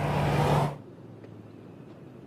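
Outdoor road-traffic noise with a steady low engine hum, cut off suddenly less than a second in, leaving only a faint steady hiss.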